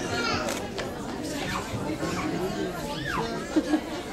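Many voices chattering in a hall, young children's high voices calling out and chattering over a general babble.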